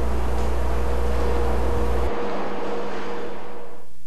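Steady hum and hiss with a faint held tone. The deep hum cuts off about halfway and the hiss fades out near the end.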